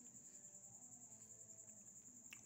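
Near silence with the faint, steady, high-pitched pulsing trill of a cricket.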